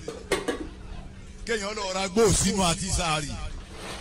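A man's voice chanting a repeated sung phrase in rising and falling pitch, starting about a second and a half in. A short metallic clink, a pot lid being handled, comes just after the start.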